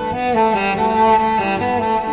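Cello playing a slow, smooth melody of sustained bowed notes, moving from pitch to pitch with short slides between some of them, in an instrumental cover of a pop song.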